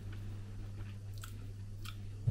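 Faint mouth and spoon sounds of people tasting soup: a couple of soft clicks, about a second in and again near the end, over a steady low hum.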